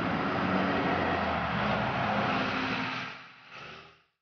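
Articulated dual-mode bus passing close by, its drive and tyres making a steady loud running noise with a low hum. The noise falls away about three seconds in, swells briefly and then cuts off abruptly.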